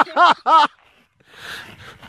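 A woman laughing, a quick run of 'ha-ha-ha' laughs that stops about two-thirds of a second in, followed by a faint breath.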